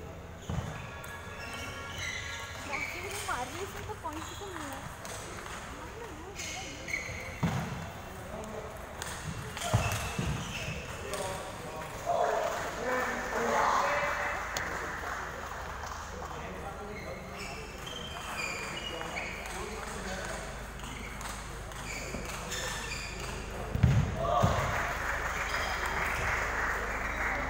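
Indistinct voices echoing in a large sports hall, with a few scattered thumps, the loudest near the end.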